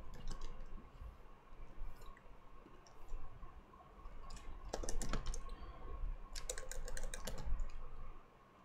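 Computer keyboard keystrokes and mouse clicks: a few scattered clicks, then two quick runs of key presses about halfway through and near the end.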